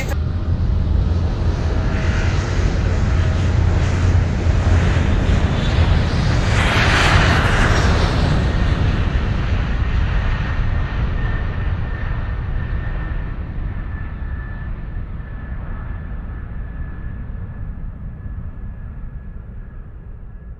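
Airliner cabin noise in flight: a loud steady rumble of the engines and rushing air, swelling about seven seconds in and then slowly fading away. A faint steady high whine sits on top in the second half.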